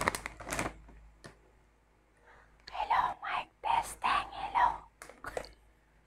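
A crinkly plastic snack bag rustles briefly as a hand reaches in. After a short pause, a woman's soft voice is heard for about two seconds.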